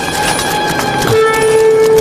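Sustained, horn-like held tones: one note gives way to a lower, louder one about a second in, and that note holds steady.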